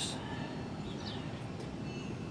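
Steady low outdoor background rumble with no engine running, and a faint short high chirp about a second in.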